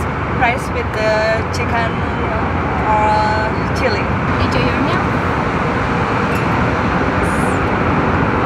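Steady in-flight cabin noise of an Airbus A320 airliner, with brief voices in the first half.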